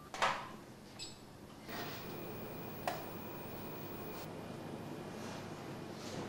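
Clacks of a hand-pressed Berliner jam-filling device as a doughnut is filled: one sharp clack just after the start, then softer clicks about one and three seconds in, over a faint steady hiss.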